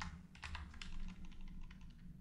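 Typing on a computer keyboard: a run of irregular keystroke clicks in quick clusters with short gaps between them.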